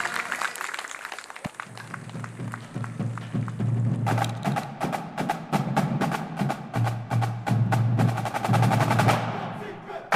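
Background music with a percussive beat: rapid, sharp clicking hits over a pulsing bass line, the percussion coming in about four seconds in.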